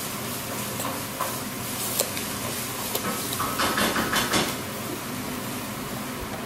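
Steady sizzling hiss, typical of food frying in a pan, with a few light clicks and taps from small toys and play dough being handled on a table.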